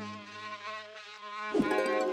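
Cartoon buzzing-insect sound effect for a small flying bug, starting suddenly about one and a half seconds in as a steady, many-toned buzz. Before it, soft held music notes fade away.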